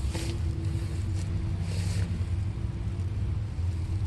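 Hart 40V brushless battery string trimmer running close by: a steady motor hum over a low rumble, with the spinning line swishing through grass twice, at the start and about two seconds in.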